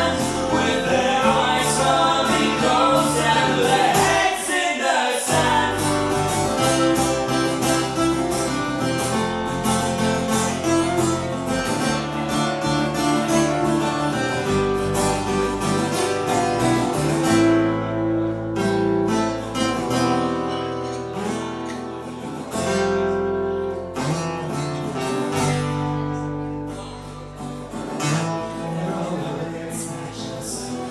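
Live band music: strummed acoustic guitars and electric bass, with male singing, loudest in the first half and a little quieter after about halfway.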